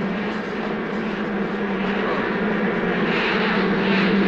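Steady droning buzz of a swarm of bees, growing louder toward the end as the swarm closes in.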